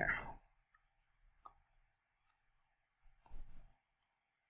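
Faint, scattered clicks of a stylus on a tablet as a triangle is drawn, three light taps spread over the first couple of seconds, then a soft dull bump about three seconds in.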